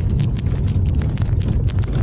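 Steady low road and engine rumble heard inside a moving car's cabin, with scattered light clicks.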